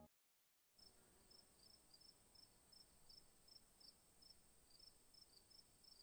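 Near silence, with very faint insects chirping: a steady high whine with short chirps repeating a few times a second, starting about half a second in after a moment of dead silence.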